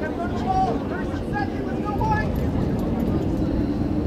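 Scattered short shouts and calls from soccer players and spectators on the field, over a steady low rumble.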